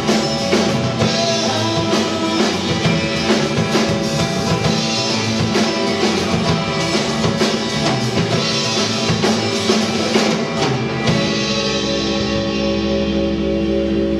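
Live rock band playing the closing bars of a song, with acoustic and electric guitars, bass and drum kit. The drums drop out about eleven seconds in, leaving a held final chord ringing.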